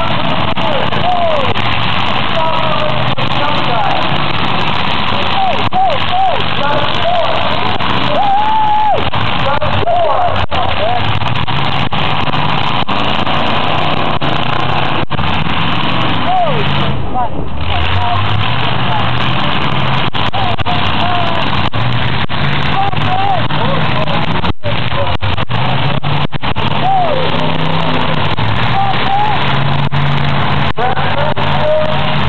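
Demolition derby cars' engines running and revving under a steady wash of crowd voices and shouts. The sound is loud throughout, with two brief dropouts in the recording.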